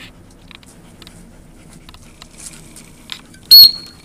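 Faint footsteps through dry leaves and grass, then one short, very loud blast on a dog-training whistle about three and a half seconds in: the whistle command for the dog to sit.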